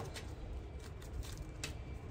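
Faint handling of a tarot card deck: a few soft clicks of cards over low room noise.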